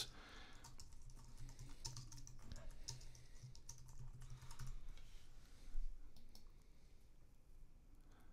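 Faint computer keyboard typing, a quick run of key clicks for about five seconds, then one louder click about six seconds in.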